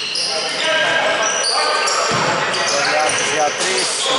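Basketball game play on a wooden gym floor: sneakers squeaking in short high squeals over and over, with the ball thumping on the floor about two seconds in, echoing in the hall.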